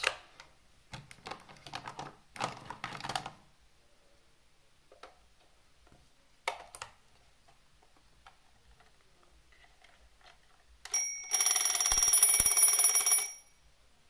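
Plastic clicks and handling as AA batteries are pressed into the battery compartment of an IKEA twin-bell alarm clock. Near the end the clock's alarm goes off: its hammer strikes the two metal bells in a rapid, loud ring for about two seconds, then stops.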